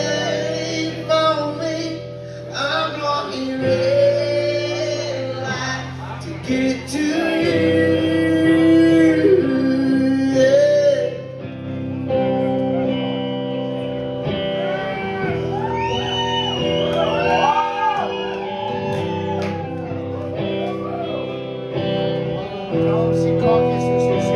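Live country-rock band playing: singing over guitar in the first half, then a guitar lead with notes bent up and down.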